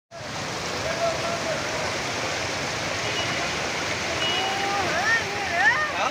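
Floodwater flowing fast along a street, a steady rushing noise. A person's voice rises over it near the end.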